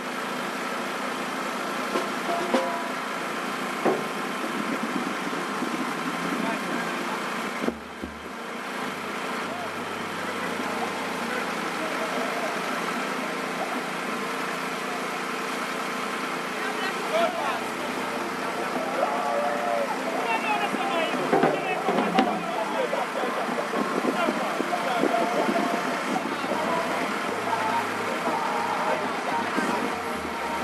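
Steady hum of slow-moving vehicle engines running. From about halfway through, voices and snatches of music rise over it.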